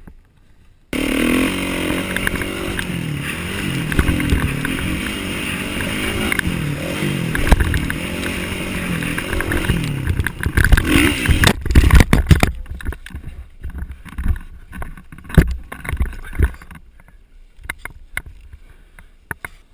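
Kawasaki KX450F's single-cylinder four-stroke engine revving hard on a dirt track, its pitch rising and falling with the throttle, coming in suddenly about a second in. Near the middle there is a burst of loud knocks and thumps, and after it the engine is no longer heard, leaving only scattered knocks.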